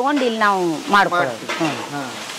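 A woman talking in short phrases that fall in pitch, over a steady faint hiss.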